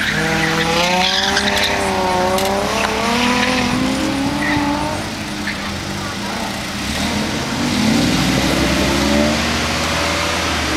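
Nissan Maxima's V6 engine driven hard around a cone course, its pitch rising and falling as the car accelerates and slows through the turns.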